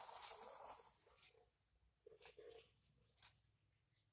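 A sheet of paper rustling as it is slid across a table by hand, for about the first second, then near silence with a few faint ticks.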